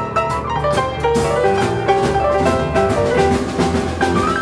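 Upright piano playing a blues boogie-woogie in G, with a repeating left-hand bass figure under quick right-hand notes. A steady beat of sharp hits, about three a second, runs behind it.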